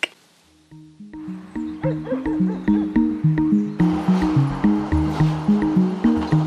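Background music coming in about a second in: a pulsing pattern of short low notes, about three a second, stepping in pitch. A fuller layer joins about four seconds in.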